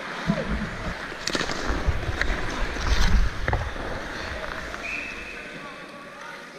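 Ice hockey play at close range: skate blades scraping the ice, with a few sharp clicks of sticks and puck and low rumble on the microphone.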